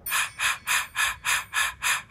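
Rhythmic gasping breaths, about three a second, thin and hissy with little low end, starting suddenly.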